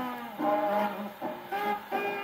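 A 1942 swing big-band record playing on an Orthophonic Victrola acoustic phonograph: an instrumental passage of short, quickly changing ensemble notes from a 78 rpm shellac disc.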